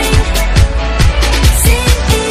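K-pop dance track: a steady kick-drum beat under layered synths.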